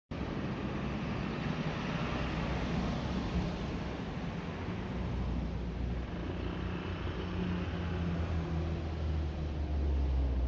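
Street traffic at a road junction: a motor scooter's engine passes, with a steady hum of other traffic. A low engine rumble grows louder near the end as a heavier vehicle approaches.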